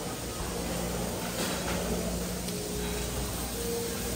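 Steady room noise of a large buffet hall: a low hum and hiss, with a couple of faint held tones in the second half.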